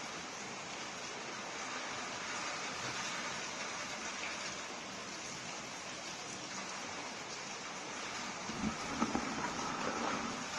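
Steady low hiss of background noise, with a few faint soft taps or rustles near the end.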